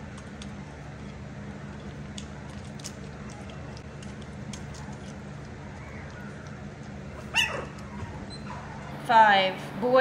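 Three-week-old Boston Terrier puppy crying: one short sliding whine about seven seconds in, then a run of louder high whimpers near the end. A steady low hum and a few faint ticks lie underneath.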